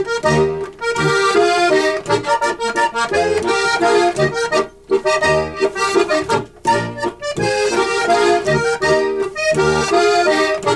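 Two diatonic button accordions of the Steirische type playing a duet of an Austrian Ländler, a waltz in three-four time, with low bass notes recurring under the melody. The music dips briefly a few times between phrases.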